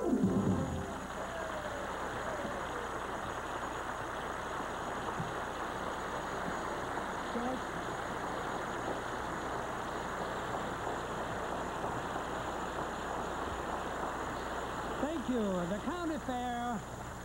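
Studio audience applauding steadily after the band finishes a samba with a final chord in the first second. The clapping goes on as an even patter until a man starts speaking near the end.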